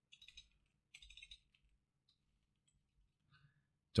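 A few faint keystrokes on a computer keyboard, in two short bursts within the first second and a half.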